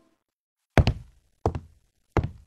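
Two heavy knocking thuds about two-thirds of a second apart, each sharp with a short dying tail, after a moment of silence.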